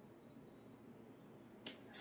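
Near silence: quiet room tone, with one brief click just before the end.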